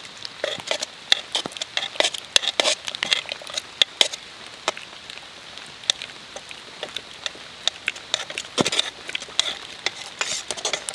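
A metal spoon stirring thick chowder in an aluminium pot, with irregular clinks and scrapes against the pot wall and wet squelching of the soup.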